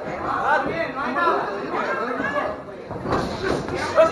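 Indistinct voices of spectators and cornermen talking and calling out, echoing in a large hall.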